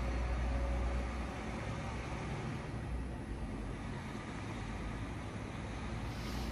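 Steady low outdoor background rumble with no distinct events, slightly louder in the first second or so.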